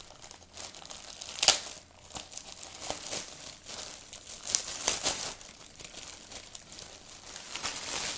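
Thin clear plastic bag crinkling and crackling in uneven handfuls as it is worked open and a folded T-shirt is pulled out of it, with the sharpest, loudest crackle about a second and a half in.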